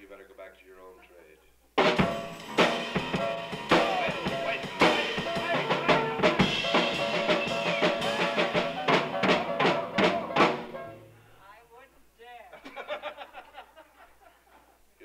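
Live jazz trio drum kit with bass and piano playing a short, loud burst of about eight seconds, full of heavy drum strokes, which starts abruptly about two seconds in and dies away about ten seconds in.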